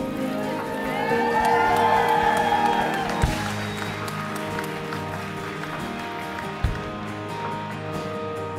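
Sustained worship music, with a congregation cheering and clapping that swells about a second in and dies down after about three seconds, as a baptism is completed. Two dull thumps a few seconds apart.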